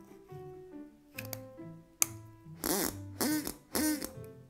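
A 3D-printed plastic reed duck call blown in three short quacks near the end, each bending in pitch. A single sharp click about halfway through, over background music.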